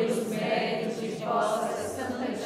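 Many voices chanting a prayer response together in unison, the group answer of a chaplet recitation.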